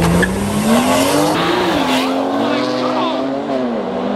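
Two BMW sedans, a 335i and a 340i, launching hard in a street race: the engine note climbs in pitch, drops at a gear change about a second and a half in, then holds as the cars pull away.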